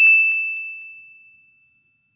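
A single high-pitched ding, like a small bell struck once, ringing out and fading away over about a second and a half.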